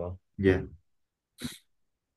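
A voice says "yeah", and a moment later comes a brief, short noisy sound like a breath or sniff. Then the line goes silent.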